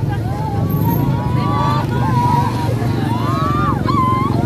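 Several women wailing and crying out in grief, their voices rising and falling over one another, over a steady rumble of street traffic.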